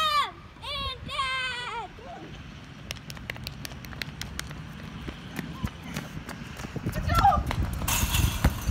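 Running footsteps of two people on a hard tennis court, a quick train of short footfalls that grows louder as the runners close in near the end. A few short, high-pitched shouted calls come in the first two seconds.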